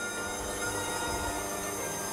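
KitchenAid Artisan stand mixer running steadily with a whining motor while its beater creams butter and sugar in the glass bowl.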